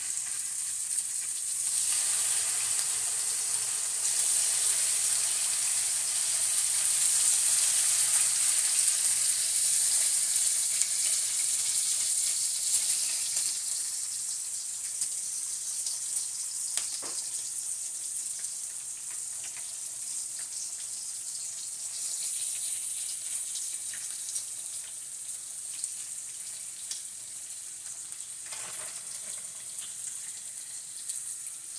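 Raw bacon sizzling and crackling in a hot oiled frying pan as halved strips are laid in one after another. The sizzle grows louder in steps as the pan fills, then settles to a steadier, somewhat quieter crackle in the second half.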